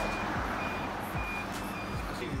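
Four short, high electronic beeps, evenly spaced a little over half a second apart, over steady background noise.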